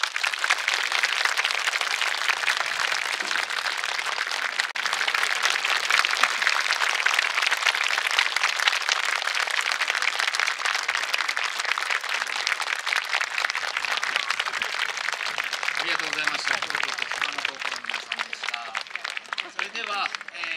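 Audience applauding: dense, steady clapping that thins out over the last few seconds, with faint voices underneath near the end.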